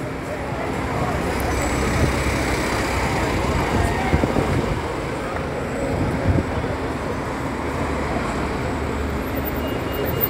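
Double-decker bus engines rumbling steadily as buses pull past at close range, over general city traffic noise.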